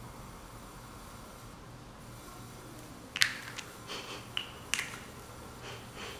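Quiet room tone, then, about three seconds in, a handful of short sharp clicks and light taps over about two and a half seconds, the first the loudest.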